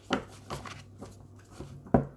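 An oracle card deck being shuffled by hand: soft card slaps and rustles, with a sharper tap of the cards near the end.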